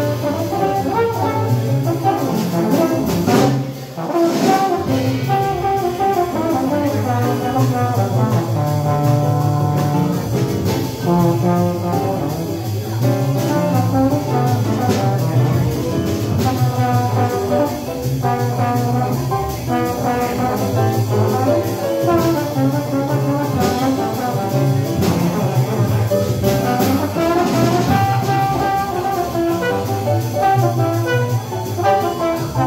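Live small-group jazz: trombone playing over piano, guitar, upright bass and drums.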